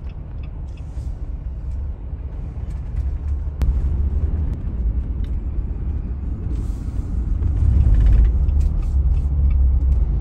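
Road noise of a car driving: a steady low rumble that grows louder toward the end. A single sharp click comes about three and a half seconds in, and a short hiss around seven seconds.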